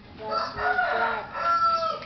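A rooster crowing once: a call in several parts, rough in the middle and ending in one long drawn-out note.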